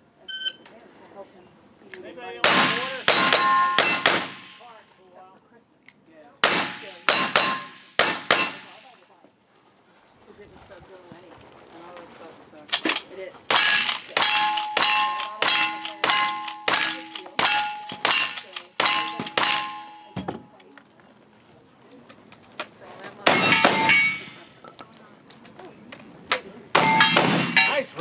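A cowboy action shooting run. Two quick groups of handgun shots come first, then a fast string of about ten lever-action rifle shots, each answered by steel targets ringing. Heavier side-by-side shotgun blasts follow near the end, two at a time.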